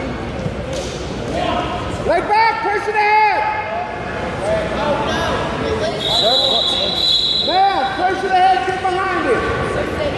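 Spectators and coaches shouting encouragement at a wrestling bout, in short bursts of calling about two seconds in and again near the end, with a steady high tone lasting about a second and a half around the middle.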